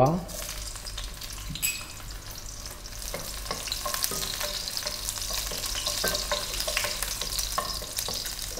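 Garlic cloves sizzling in hot cooking oil, the start of a sauté, stirred with a wooden spoon that knocks and scrapes against the pan now and then. The sizzle slowly grows louder.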